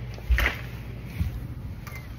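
A low thump about a third of a second in and a softer knock about a second later, with rustling and handling noise, from a man walking out of a building through a doorway.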